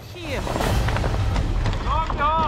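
Bradley fighting vehicle running with its gun firing: a steady low rumble under rapid, irregular cracks, with a man's voice breaking in near the start and again at the end.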